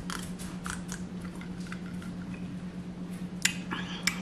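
Sipping and swallowing from a glass of iced drink: small wet clicks and slurps, with a sharper click near the end, over a steady low hum.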